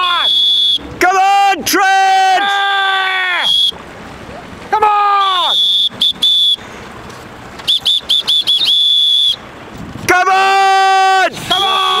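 Air horns sounded in a series of long blasts, each sagging in pitch as it dies away, alternating with a high whistle blown in a run of short chirps and then a held note. The horns and whistle are sounded in celebration as a Channel swimmer nears the finish.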